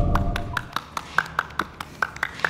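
A fast, even run of sharp taps, about five a second, each with a short high ring. It follows the end of loud, tense music at the very start.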